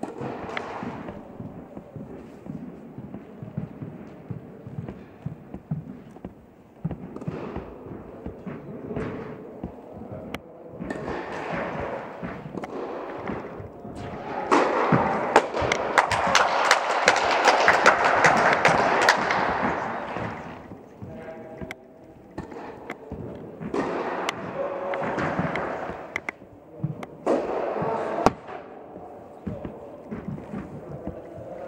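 Tennis balls being struck and bouncing, sharp knocks that echo in a large indoor tennis hall. For several seconds in the middle there is a denser, louder stretch of rapid clatter.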